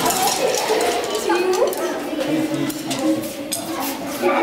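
Children talking over one another in a large hall, with a few light clicks of wooden sticks being laid on a stone floor.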